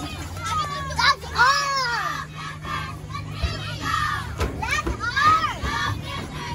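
Young cheerleaders shouting a cheer together, with loud chanted calls about a second in and again near the end.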